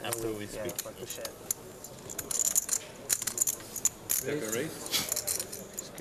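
Poker chips clicking against one another as players handle their stacks at the table: many small, sharp clicks, thickest a couple of seconds in. Low voices murmur briefly at the start and about four seconds in.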